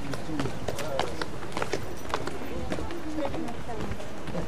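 Footsteps on wet stone steps, an irregular run of sharp taps, with people's voices talking underneath.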